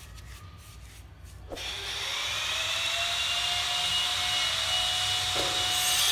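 A small electric motor, like a power tool's, starts about one and a half seconds in, its whine rising briefly and then running steady. It grows louder, with a brighter hiss, near the end.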